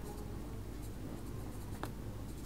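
Ballpoint pen writing on notebook paper, a faint scratching of strokes, over a steady low hum. There is one sharp tick near the end.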